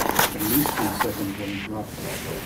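A man's voice speaking quietly and indistinctly, in low drawn-out sounds, as in a pause while thinking of an answer.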